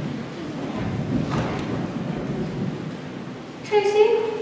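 Low rumbling and shuffling of several performers' footsteps on a hollow wooden stage, with a few faint knocks. A voice starts speaking near the end.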